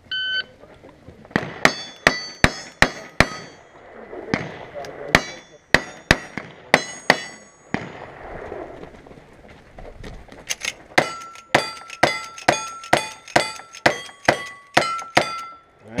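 Shot-timer start beep, then rapid gunfire at steel targets, each shot followed by the ring of the struck steel plate. The shots come as a string of about five, a second string of about five, a pause of about three seconds, then a longer, faster string of about a dozen shots.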